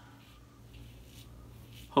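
Faint scratching of a brass Karve double-edge safety razor with a Feather blade drawn in short strokes through shave-cream lather over stubble. A man's voice starts again at the very end.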